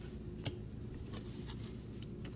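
Trading cards being handled and set down on a table: one light tap about half a second in and a few faint ticks, over a low steady room hum.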